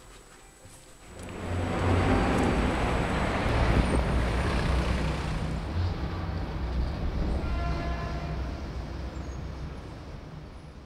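Low rumble and rushing noise of road traffic, swelling in about a second in and slowly fading toward the end.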